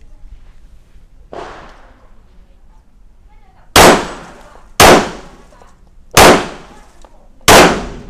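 A Laugo Arms Alien 9 mm pistol firing four shots, about a second to a second and a half apart, each with a short echoing tail. A fainter bang comes about a second and a half in.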